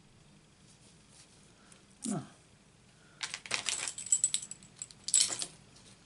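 Small hard craft supplies being handled on a tabletop: a brief low sound about two seconds in, then two bursts of light clicking and rattling about a second apart.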